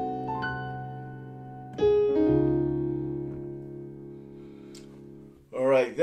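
Digital piano chords: a few notes about half a second in, then a full chord struck about two seconds in, held and left to die away slowly. This is the closing chord of a progression resolving to D-flat.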